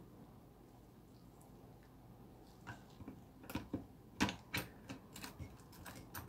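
Quiet for the first couple of seconds, then a run of light irregular clicks and ticks as the RC truck's plastic and metal differential parts and gears are handled and fitted into the chassis.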